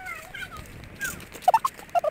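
A person's short high-pitched cries in quick succession, each sliding up or down in pitch, louder and more clustered in the second half.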